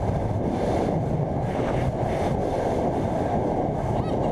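Steady loud rushing of wind over a camera microphone as a rider free-falls and swings on a canyon swing rope.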